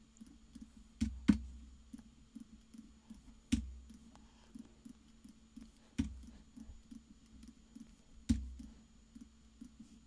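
Computer mouse clicks and keyboard taps while filling in a web form: five sharp clicks, each with a low thump and a couple of seconds apart, among softer rapid ticks, over a faint steady hum.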